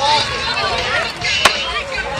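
Many voices of a crowd talking over one another, with a single sharp clack of a skateboard striking concrete about one and a half seconds in.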